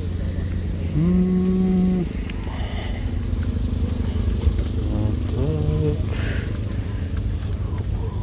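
A motor vehicle engine idling close by, a steady low rumble. Two short drawn-out calls from a man's voice sound over it, about a second in and again just past five seconds.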